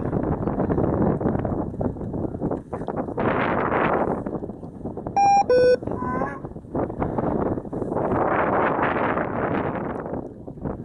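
Wind buffeting the microphone, swelling twice. About five seconds in, an F3F course timing system sounds a two-tone electronic beep, a short high tone followed by a lower one, signalling the glider crossing a turn base.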